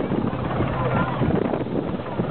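Westland Sea King helicopter hovering, its rotor and engine noise heard over the sea, with wind on the microphone.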